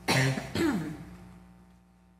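A man clearing his throat in two quick parts, the second falling in pitch, then fading out over a steady low hum.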